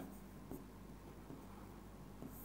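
A pen writing and drawing on a whiteboard, faint, with a light tap about half a second in.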